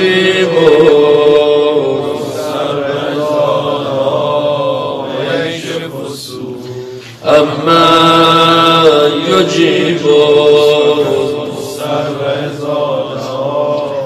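A man's voice chanting a mournful religious lament into a microphone in long, drawn-out melismatic notes, breaking off briefly about seven seconds in and then resuming.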